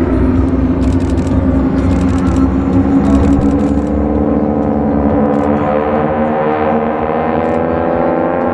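Formation of North American T-6 Texans' nine-cylinder Pratt & Whitney R-1340 Wasp radial engines and propellers droning together in a passing formation. The drone's pitch climbs slightly in the second half as the formation noses over into a dive.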